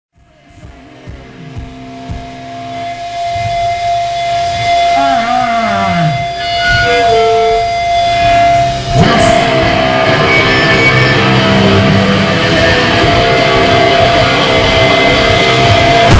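Heavy rock music fading in: sustained electric guitar notes with one long held high note and falling pitch slides, then the full band comes in louder about nine seconds in.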